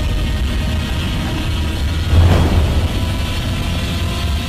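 Film trailer sound mix: a deep, continuous rumble with a sudden heavy hit about two seconds in.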